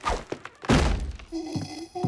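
Cartoon thunk sound effects of a heavy body hitting a wooden deck: a light knock, then a loud heavy thunk about two-thirds of a second in, followed by a short held tone near the end.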